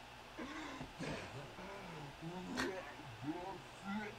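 Faint male voice making drawn-out, wavering sounds of disgust, the pitch rising and falling, from an anime character who has just tasted something foul. A sharp click comes a little past halfway.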